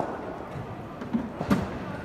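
Footsteps and a couple of sharp thuds, one at the start and a louder one about a second and a half in, from cricket batters moving through footwork drills on synthetic turf.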